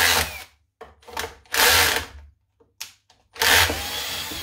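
Cordless drill-driver unscrewing the fasteners that hold the wooden workbench legs together, run in three short bursts with light clicks between.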